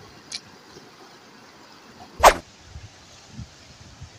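Steady rush of a fast mountain river, with one short, sharp, loud sound a little after two seconds in and a faint click near the start.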